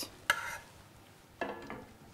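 A spoon scraping thick milk custard out of a bowl into a glass dish: a short scrape about a third of a second in, and a fainter one about one and a half seconds in.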